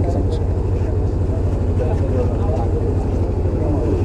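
Steady low mechanical drone, like an engine or generator running, under faint voices of the crowd.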